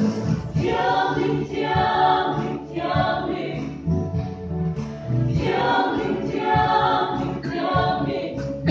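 Church choir of men and women singing together in several voices, phrases swelling and easing every second or two.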